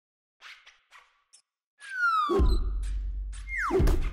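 Animated logo intro sting: a few light ticks, then two falling swoops, each landing on a deep hit that rumbles on, the first about two seconds in and the second near the end.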